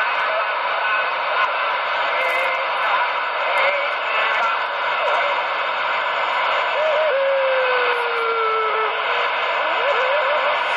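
CB radio receiver hissing with steady static from its speaker, cut off sharply below and above like a radio channel. A faint wavering whistle drifts slowly down in pitch about seven seconds in.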